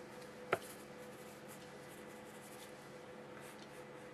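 A steady low hum, with one sharp click about half a second in and a few faint ticks afterwards.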